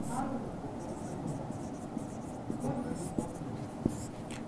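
Marker pen writing on a whiteboard: faint scratching strokes with a few light ticks.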